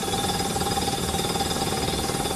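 Crawler drilling rig's hydraulic rock drill hammering into a rock face, a loud, steady, rapid percussive rattle with the rig's engine running underneath.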